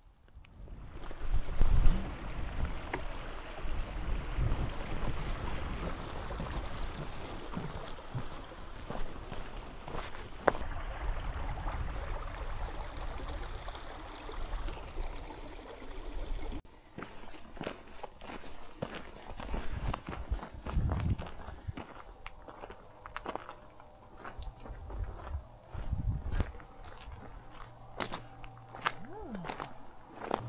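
A small moorland stream running over rocks, with wind gusting on the microphone. After a sudden cut just past halfway, footsteps crunch on a gravel path, with more wind gusts.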